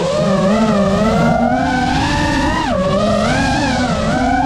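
FPV quadcopter's motors and propellers whining, several tones swooping up and down together with the throttle. There is a sharp drop in pitch about three-quarters of the way through, which then climbs back.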